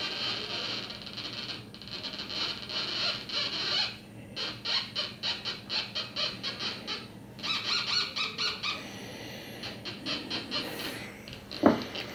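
Homemade Minipulse Plus pulse induction metal detector's audio output: a high-pitched tone, then a run of quick beeps at about four a second from about four seconds in, pausing and resuming briefly near eight seconds. The beeping is the detector signalling a small metal target passed in front of its coil.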